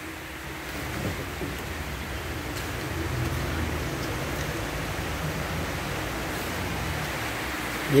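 Light rain falling: a steady, even hiss of drizzle.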